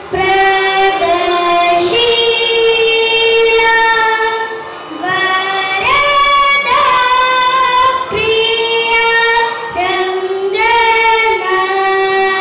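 A young girl singing solo into a microphone, a slow melody in long held notes, phrase after phrase with brief pauses between them.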